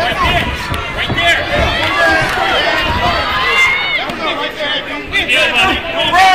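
Boxing crowd and ringside voices shouting over one another, many voices at once and loud throughout.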